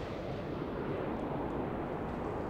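A steady background rumble, an even noise with no distinct events in it.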